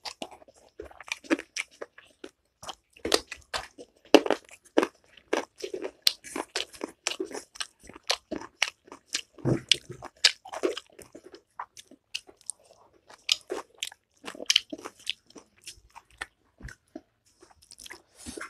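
Close-up chewing and crunching of a mouthful of food, with many short crunches and wet mouth clicks in an irregular run.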